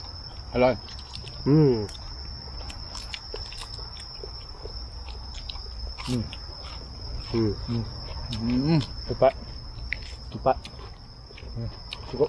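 Men eating, with several short, pleased "mmm" hums of tasting and scattered small clicks of chewing and handling crisp lettuce. A steady high-pitched insect drone runs underneath.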